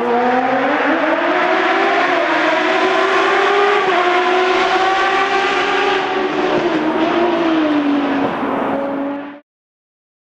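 An engine revving, its pitch climbing and dipping slowly several times, then fading out over about a second near the end.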